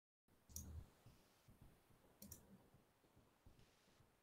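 Near silence: faint room tone opening from dead silence, with two soft clicks, one about half a second in and another just after two seconds.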